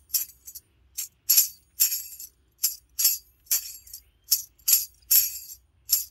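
A handheld half-moon tambourine struck against the palm in a steady rhythm, about two to three strokes a second, its metal jingles ringing briefly with each stroke.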